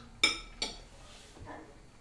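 A metal fork clinking against a ceramic plate as it is set down: two short ringing clinks about a third of a second apart, then a faint tap.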